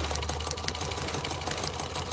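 A steady low hum with a scatter of faint clicks and crackle, part of an animated film's soundtrack between lines of narration.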